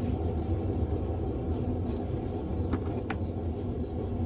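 A steady low background rumble, with a few faint light clicks of small paper strips being handled and snipped with small scissors.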